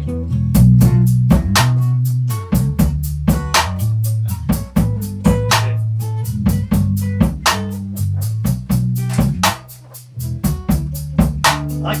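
Live band jam: electric bass playing sustained low notes over a drum kit keeping a steady beat of about four hits a second. The bass briefly drops out about ten seconds in.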